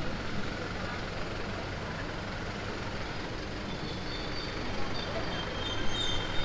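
Night street traffic: engines of passing jeepneys and cars running over a steady road noise, getting louder near the end as a car passes close.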